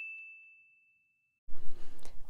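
Bright single-note 'correct answer' ding sound effect ringing out and fading away over about a second and a half. Then dead silence, with faint room hiss coming back near the end.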